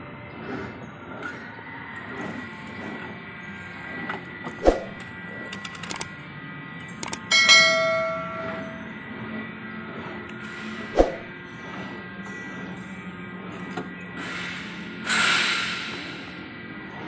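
A steady machinery hum with two sharp knocks, one about five seconds in and one about eleven seconds in. About seven seconds in there are a couple of clicks and then a bell-like ding that rings out for about a second: the sound effect of a subscribe-button animation. A short swish follows near the end.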